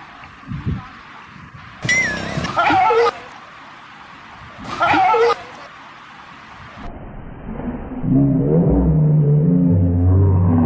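Dog startled by a toy tiger: two short high yelps about two and five seconds in, then a long, low, steady growl running from about eight seconds in.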